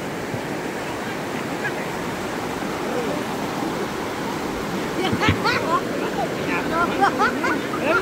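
River water rushing over a line of rocks, a steady wash of running water. From about five seconds in, people's voices call out over it.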